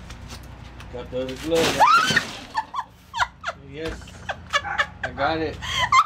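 A woman's loud cry, rising and falling in pitch, as she slips on ice and falls, followed by bursts of laughter that grow more frequent toward the end.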